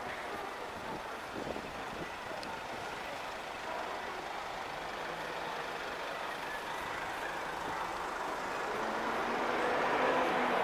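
Street traffic noise with a van's engine running close by, a low engine hum that grows louder toward the end.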